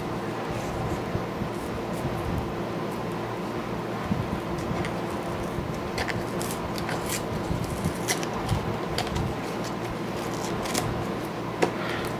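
Cellophane wrapper crinkling and crackling in irregular little clicks as it is pulled off a small cardboard box, over a steady background hum.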